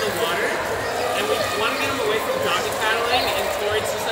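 Speech: a man talking, over the steady background wash of an indoor pool hall.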